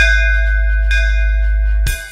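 Bass-test DJ remix music: a loud, sustained sub-bass drone under a bell-like chime, struck at the start and again about a second in. Sharp drum hits come in near the end as the drone cuts out.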